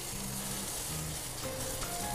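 Steady sizzling hiss as water is brushed onto hot baked rolls and their metal tray in the oven, with background music.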